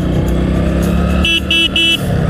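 Motorcycle engine running steadily while riding, with a horn beeped three times in quick succession in the second half.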